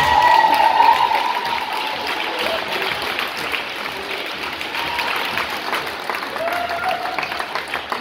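Audience applauding with lots of fast clapping in a large hall, with a long high cheer in the first second and a few voices calling out later.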